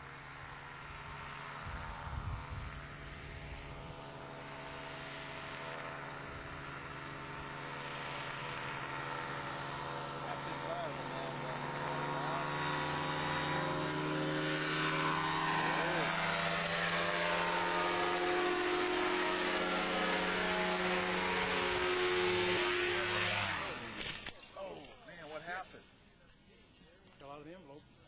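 Homemade powered parachute's engine and propeller running steadily, growing louder as the craft flies in low. About 23 seconds in the engine sound cuts off suddenly as the craft, losing lift, comes down and crashes.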